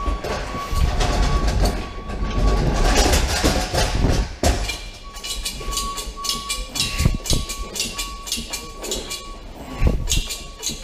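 A hand pallet jack rolls a loaded pallet across a truck trailer's floor. Its wheels rumble and rattle with many clicks, and there is a sharp knock about halfway through. A thin steady high tone comes and goes.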